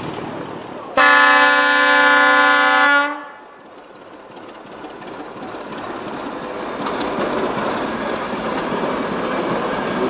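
Class 749 'Bardotka' diesel locomotive sounding one horn blast of about two seconds, which cuts off about three seconds in. The train then comes closer and passes, its engine and running gear growing steadily louder, with a few wheel clicks.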